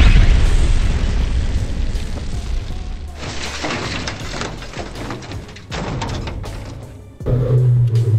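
A loud boom, like an explosion, as the katana chops through a soda can, dying away over about three seconds, with music underneath. Two softer booms follow, about three and six seconds in.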